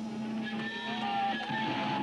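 Electric guitar from a live rock band, sounding held, slightly wavering notes over a steady amplifier hum, with a rough, noisy edge.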